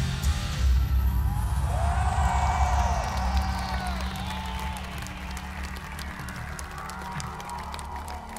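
Live rock band's closing chord hit and left to ring, with a low amplifier drone, slowly fading while the crowd cheers and whoops.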